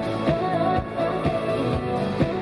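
Live pop band playing with a woman singing over a steady drum beat, about two beats a second.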